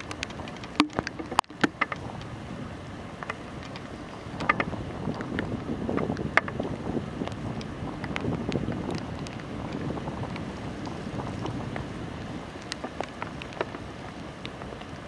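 Wind buffeting the camera microphone as it moves along a forest path, a steady low rumble that grows louder about four seconds in, with scattered light clicks and taps throughout.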